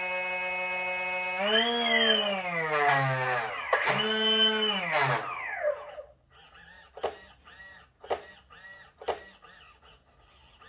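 A DPower AL3548-4 brushless motor spins the boat's propeller in the air on a stand, making a steady whine. The whine is revved up and back down twice, then winds down and stops about six seconds in.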